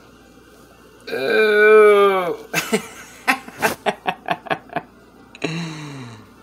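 A man's drawn-out vocal exclamation, then a run of short, breathy bursts of laughter, and another falling vocal sound near the end.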